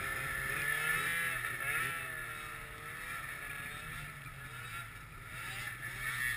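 Two-stroke snowmobile engines: one runs steadily at idle while another is revved up and down repeatedly.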